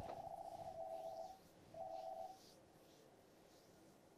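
Faint steady electronic tone sounding twice: the first lasts about a second and a half, the second is shorter and follows a brief gap.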